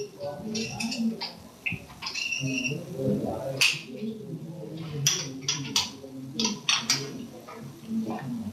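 Faint, indistinct talking heard over a video call. Several sharp clicks and clinks come between the middle and near the end, from a steel carabiner and lanyard hook being handled and clipped to the back D-ring of a fall-arrest harness.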